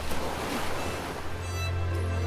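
Ocean surf washing ashore, mixed with soft background music. The music's held tones swell up about a second and a half in.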